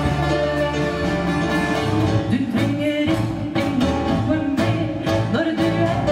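Live band playing a song, with drums and guitars and a woman singing.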